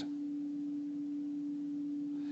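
A steady, unchanging tone at a single middle pitch, with a faint higher overtone above it.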